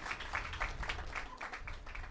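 Faint, scattered clapping: several irregular claps a second.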